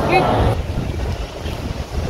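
Wind rumbling on the microphone outdoors, an uneven low rumble.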